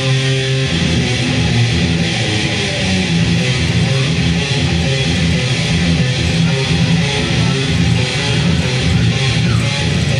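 Loud heavy rock music driven by electric guitar, playing on without a break.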